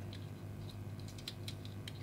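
Faint, irregular small clicks and scratches of a fingernail and a thin pick picking at a paper barcode sticker as it is peeled off a toy car's plastic base, over a low steady hum.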